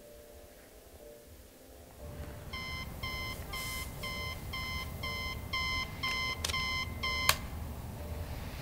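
Digital alarm clock beeping, starting about two seconds in at about two beeps a second and growing louder, then cut off by a sharp click.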